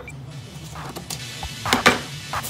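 Scissors cutting stiff butcher paper, with the paper crackling as it is handled: a few short crisp cuts and rustles, the loudest near the end.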